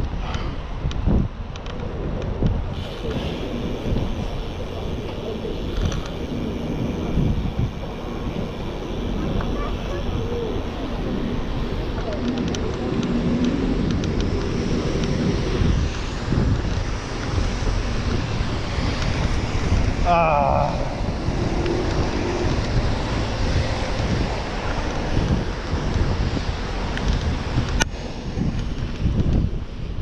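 Wind buffeting an action camera's microphone while riding a bicycle along a city road, a steady loud low rumble with traffic noise underneath.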